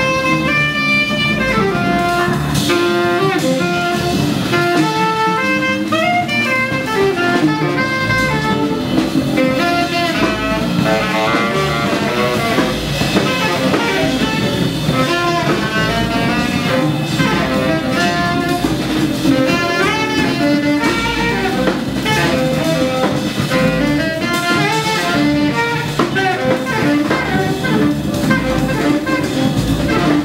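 Live acoustic jazz: a saxophone plays a busy lead line with fast runs over drum kit with cymbals and double bass.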